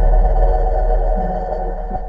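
Electronic logo sting: a steady synthesized drone over deep bass, ringing on from a hit just before and slowly fading.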